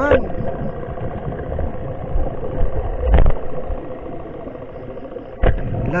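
A steady mechanical hum carried through the water, with two sharp knocks, one about three seconds in and one near the end.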